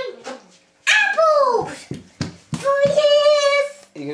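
A young child singing: a high note that slides down about a second in, then one long held note near the end.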